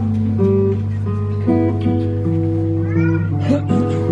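Solo classical guitar playing a slow melody in single plucked notes that ring on into each other. About three seconds in, a short vocal sound from a person in the audience cuts briefly across the guitar.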